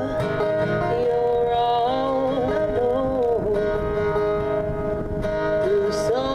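Harmonica played through a cupped vocal microphone, with long held notes that bend up and down, over acoustic guitar.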